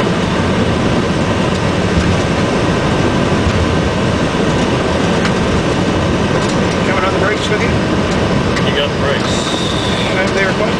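Steady, loud noise on a Boeing 757-200ER flight deck during the landing rollout: engine and airflow noise mixed with the rumble of the wheels on the runway as the airliner slows down.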